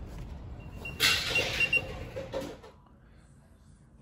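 A rustling, sliding handling noise starts suddenly about a second in and lasts about a second and a half, with a faint thin high tone under it. After that it falls almost silent.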